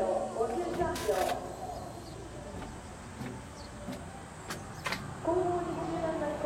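Indistinct talking at the start and again near the end, with a quieter stretch of outdoor background noise between and a brief burst of noise about a second in.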